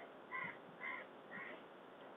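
A bird calling faintly in the background, three short calls about half a second apart.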